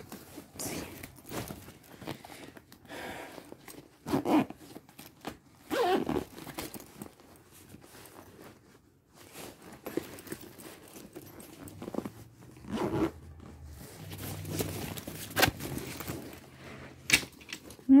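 Fabric diaper backpack being zipped shut and handled: zipper pulls, rustling and scraping of the fabric, with a few louder knocks. The bag is brand new and hard to close.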